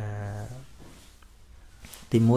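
A man's voice holding one drawn-out syllable for just over half a second, then a pause with faint room sound.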